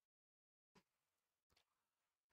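Near silence, broken by two faint short clicks a little under a second apart.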